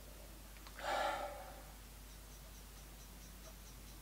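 A single audible breath of just under a second, about a second in, while nosing a glass of bourbon.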